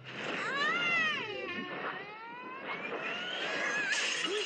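A cartoon dog's voiced howl: one call rising and falling over the first second and a half, then a second long call that slowly climbs in pitch.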